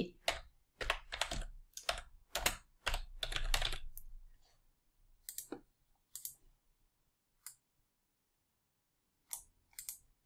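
Typing on a computer keyboard: a quick run of keystrokes over the first four seconds or so, then a few single clicks spread out through the rest.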